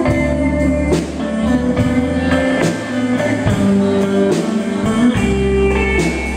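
Live country band playing an instrumental break: electric guitar and pedal steel carry the melody with some gliding notes, over bass and drums.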